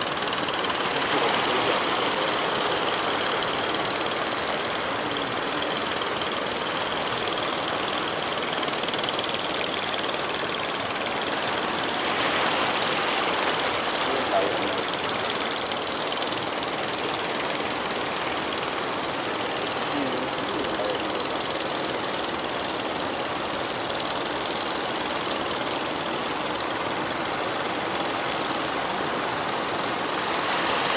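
Fishing boats' engines running under a steady wash of sea and wind noise.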